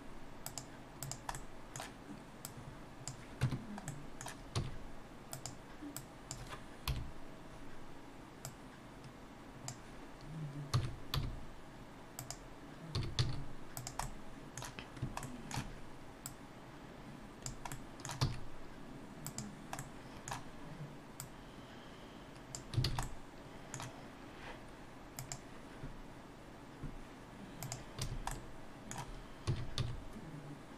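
Computer keyboard keys and mouse buttons clicking irregularly, a few taps at a time, as shortcut keys are pressed; some strokes land with a duller thud.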